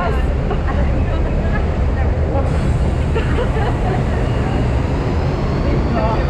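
Steady rushing rumble of a river rapids ride raft moving along its water channel: water noise and wind on the camera microphone, with faint voices of riders mixed in.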